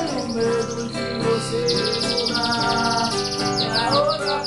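Acoustic guitar playing with a man's wordless singing, while a songbird sings loudly over it. The bird gives a fast, high trill in the middle and a run of quick falling whistles near the end.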